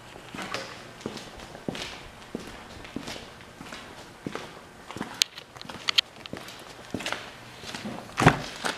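Footsteps on a concrete floor at a steady walking pace, about one step every two-thirds of a second, with a couple of sharp clicks in the second half.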